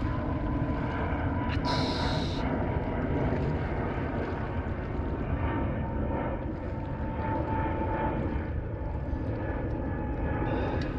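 A steady, distant engine drone with a faint wavering whine, over a low rumble of wind on the microphone. A brief hiss comes about two seconds in.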